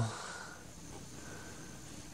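Quiet room tone: a faint, steady hiss with no distinct sound in it.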